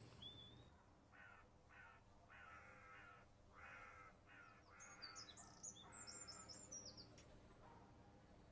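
Faint crows cawing, a string of about seven harsh calls, with a small bird's quick, high chirps coming in about five seconds in.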